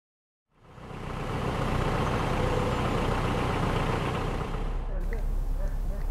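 Half a second of silence, then a narrowboat's engine fades in, running steadily with a rushing noise over a low rumble. About a second before the end it gives way to a steadier low engine hum.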